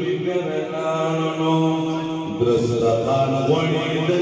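A man chanting Islamic devotional verse into a microphone, amplified in the hall, in long held notes with a short break a little past halfway.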